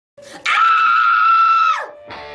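A woman's high-pitched excited scream, held steady for over a second and falling away in pitch as it ends.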